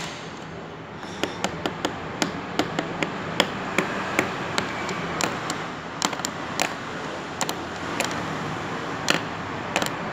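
Sharp, irregular clicks and knocks, about two a second, over a steady background hum.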